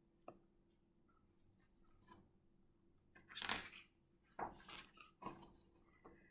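Page of a hardcover picture book being turned and handled: a few faint, brief paper rustles in the second half, otherwise near silence.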